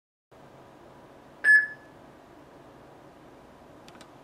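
A single short electronic beep about a second and a half in, from a point-of-sale console set to beep as soon as it receives a Bitcoin payment: the sign that the payment has arrived. Faint room hiss around it.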